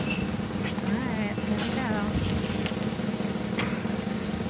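A paper slip drawn by hand from a brass wire raffle drum: a few sharp clicks and rustling from the drum and slips, over a steady low hum and faint voices.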